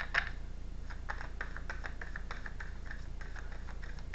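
A deck of tarot cards being shuffled by hand: a quick, irregular run of light clicks and flicks as the cards slide and tap against each other, over a steady low hum.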